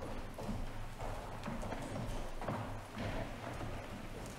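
Footsteps of shoes on a tiled church floor, irregular and echoing, as people walk to and from the communion rail, over a low steady hum.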